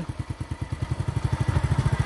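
Small motorcycle engine running steadily at low speed as the bike is ridden, a fast even putter of firing pulses.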